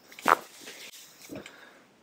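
Spinal joint cracking under a side-lying lumbar adjustment thrust: one sharp crack about a third of a second in, with a fainter, shorter sound about a second later.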